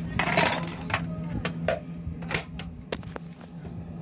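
Series of sharp plastic clicks and taps as a DVD is snapped onto the spindle of a portable DVD player and the player is handled and closed, over a steady low background hum.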